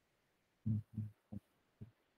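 Computer keyboard keys being typed: four muffled low thumps, the first two the loudest.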